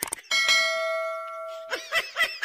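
A single bell-like ding: a sharp click, then a ringing tone with steady overtones that fades over about a second and a half. Short warbling sounds follow near the end.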